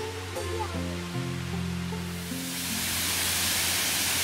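Background music with slow held notes; about halfway through, the steady rush of a waterfall fades in and grows louder underneath it.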